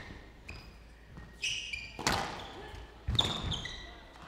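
Squash rally: the ball struck by rackets and hitting the walls about once a second, with short squeaks of court shoes on the floor.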